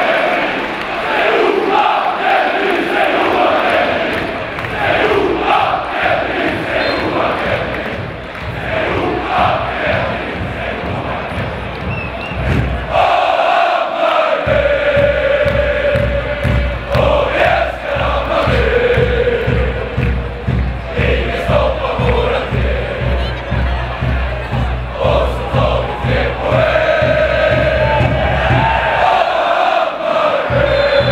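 A large football crowd of home supporters chanting in unison. About twelve seconds in, a new song starts over a steady drumbeat, which carries on to near the end.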